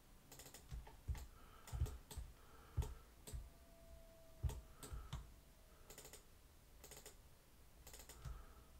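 Quiet computer mouse and keyboard clicks at irregular intervals, several in quick double-click pairs, each with a dull thump.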